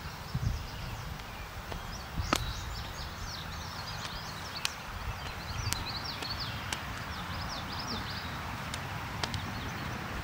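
Outdoor ambience: a low wind rumble on the microphone, with many faint, quick bird chirps through the middle and a few sharp clicks.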